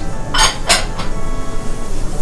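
Two short metallic rattles about a third of a second apart, from a metal tin of ground black pepper being handled over a ramen bowl, under steady background music.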